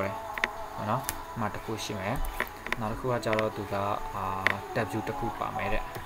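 A voice talking or singing without clear words, over a steady high hum.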